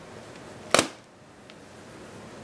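Handling noise: a single sharp knock about three quarters of a second in, then faint room hiss.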